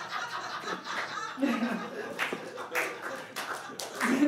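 Audience laughing, with scattered claps joining in partway through.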